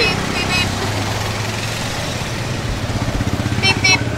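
Motorcycle engine idling close by, a steady low putter with a fast even pulse, amid street traffic.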